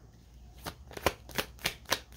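A deck of divination cards being shuffled by hand: a run of crisp card snaps, about three a second, beginning about half a second in.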